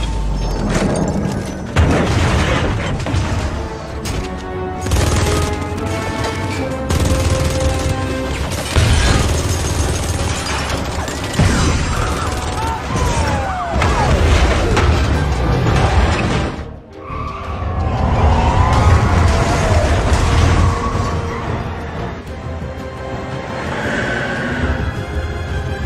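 Action-film soundtrack: dramatic score music mixed with repeated booms of explosions and crashes of cars.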